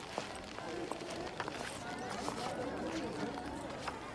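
Busy street crowd ambience: many indistinct voices chattering in the background, with scattered light clicks and knocks.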